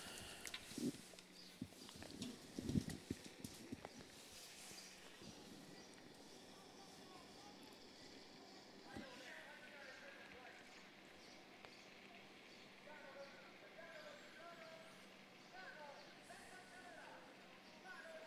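Faint hoofbeats of trotting harness horses, with a few louder knocks in the first few seconds. After that only a low background remains, with faint distant voices in the second half.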